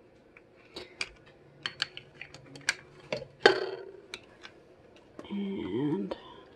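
Plastic serving tongs clicking and clattering against a stainless slow-cooker insert and a plate, in a run of sharp irregular clicks, the loudest about halfway through. Near the end comes a short rising squeak.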